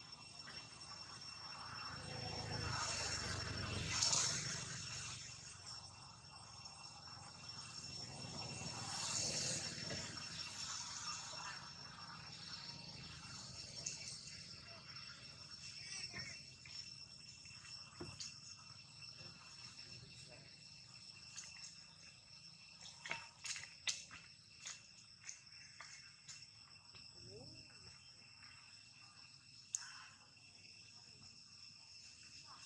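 Steady high insect drone holding two even pitches, with soft swells of background noise early on and scattered light clicks and rustles in the second half.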